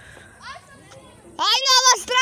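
A child's high-pitched voice calling out in a long, wavering shout starting about one and a half seconds in, after a brief softer vocal sound near the start.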